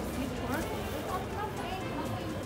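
Indistinct voices of people talking outdoors, with footsteps on pavement.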